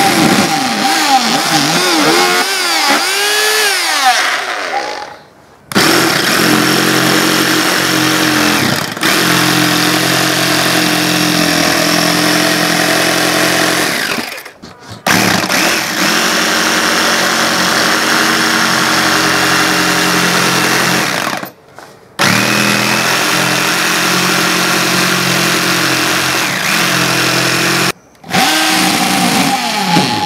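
A cordless drill whirs, its pitch rising and falling with the trigger as it bores a starting hole through the plywood. A Ryobi cordless jigsaw then cuts out the circle for the shield boss, running steadily in three stretches of several seconds with brief stops between. The drill whirs again briefly near the end.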